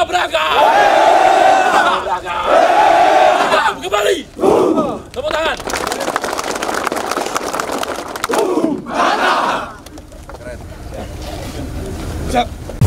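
A large group of soldiers chanting and shouting a unit yell in unison, with long held shouted notes in the first few seconds and again about nine seconds in, looser crowd shouting between, and the noise dropping away near the end.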